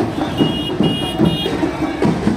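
Procession drums beating over a crowd, with a high electronic two-tone beep repeating about two to three times a second.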